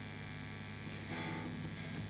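Low, steady electrical hum and buzz from a guitar amplifier rig standing idle. A faint pitched tone joins in about halfway through.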